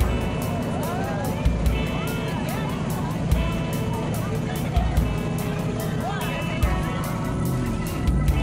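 The engine of a Shelby Cobra–style roadster running as the car drives slowly past, with deep low bursts about every second and a half. Crowd voices and music sound underneath.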